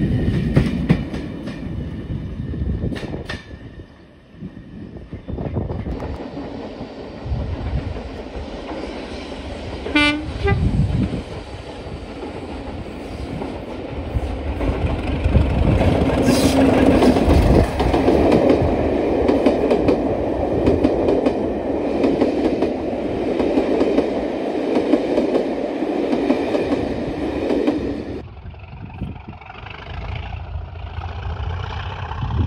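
Class 37 diesel locomotive hauling a rake of coaches, first running away from a station, then approaching and passing close by with loud engine noise and wheels clattering over the rail joints. Its horn sounds briefly about ten seconds in and again about sixteen seconds in.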